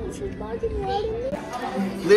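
A young child's voice talking and playing, its pitch sliding up and down.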